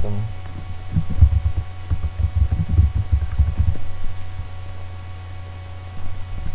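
Computer keyboard being typed on in a quick, irregular run of dull, low knocks for a couple of seconds, over a steady low hum.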